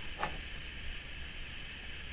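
Quiet room tone: a low steady hum under faint hiss, with one faint short sound about a quarter second in.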